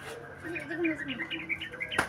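Bird chirping: a quick run of short, high chirps, several a second, starting about half a second in.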